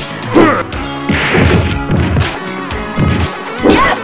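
Music with dubbed-in fighting-game hit and smash sound effects, a string of sharp impacts. A falling sweep comes soon after the start and a rising one near the end.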